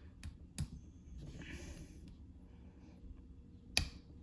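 Small plastic LEGO pieces clicking as they are handled and pressed together: two light clicks early, some soft handling, and one sharper, louder click near the end.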